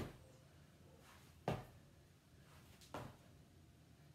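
Two soft thuds of sneakered feet coming down on a tiled floor, the first about a second and a half in and a softer one about a second and a half later, against quiet room tone.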